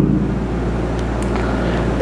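Steady low background hum with a faint even hiss above it, and no speech.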